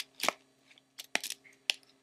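About five short clicks and rustles as a small clear plastic bag of metal spikes and screws is handled.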